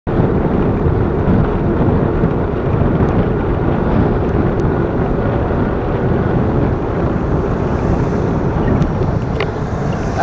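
Steady wind buffeting on the microphone of a camera moving along a city street, over a low rumble of road and traffic noise. A few faint clicks come near the end.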